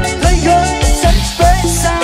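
Live band music with a steady dance beat: drum kit and keyboard over strong bass notes.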